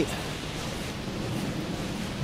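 Steady rush of flowing water from the river and waterfall in the glen, an even hiss with no breaks.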